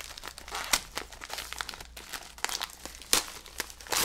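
Mail being handled and unwrapped: irregular paper and packaging crinkling with short sharp crackles, the loudest about three seconds in.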